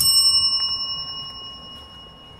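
A notification-bell sound effect: a single bright ding that rings on and fades away over about two seconds.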